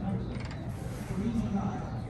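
Indistinct voices of people talking nearby, with a brief run of faint clicks about half a second in.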